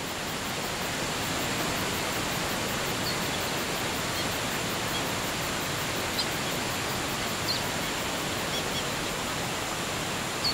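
Steady rush of a waterfall, swelling in over the first second or so and then holding level, with a few faint, brief high bird chirps scattered through it.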